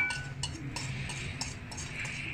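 A metal utensil clinks once against a dish right at the start, with a brief ring, then taps and scrapes lightly as ground spices are scooped from a plate into a glass bowl.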